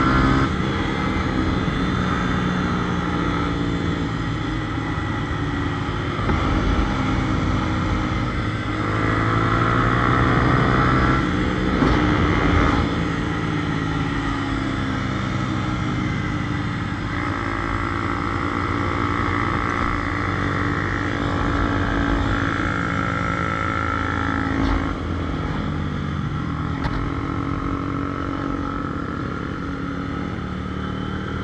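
Motorcycle engine running at road speed, heard from on board the bike. Its pitch rises and falls with the throttle, with a clear dip and climb about twelve seconds in, over a steady rush of road noise.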